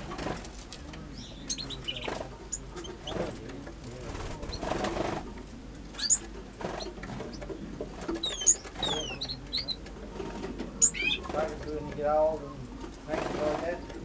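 Small aviary finches calling: scattered short, high chirps and quick sliding whistles, with lower wavering sounds mixed in, strongest a little after the middle.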